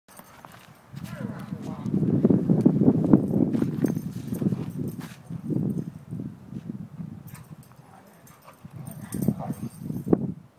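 Dogs play-growling: rough, low growly bouts that are loudest between about two and four seconds in, with a shorter bout near the end.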